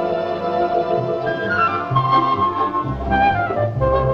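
Orchestral film score with a woodwind melody played on a pipe-like flute tone. A held note gives way to a moving tune, with bass notes entering about a second in.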